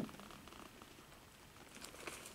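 Near silence: faint room tone in a pause between spoken phrases.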